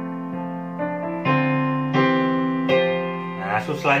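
Piano chords played one after another, a new chord struck about every half second to a second and left to ring. This is a chord progression with suspended (sus) chords worked in.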